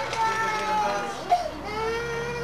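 A young child crying in long, drawn-out wails, each held about a second with rising and falling pitch.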